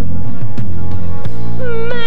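Armenian pop song performed live: a steady beat over sustained bass chords, and a woman's voice coming in near the end with a note that slides up and is held.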